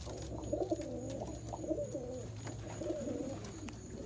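Domestic pigeons cooing: a continuous run of low, wavering coos.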